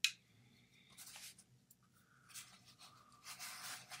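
Hand tools being handled: a sharp metallic click with a short ring right at the start as the pliers are worked, then a few soft rustling and scraping noises as tools are moved about in their case.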